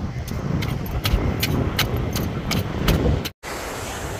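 A blade scraping the large scales off a parrotfish, one crisp scrape about three times a second, over a low rumble of wind on the microphone. The scraping breaks off about three seconds in.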